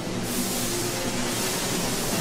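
Anime soundtrack: background music under a loud hissing sound effect of alchemic lightning striking, which starts just after the beginning and fades near the end.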